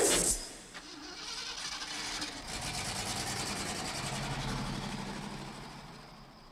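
The end of a loud sparking electrical blast, then an engine-like rumble that builds over a few seconds and fades away.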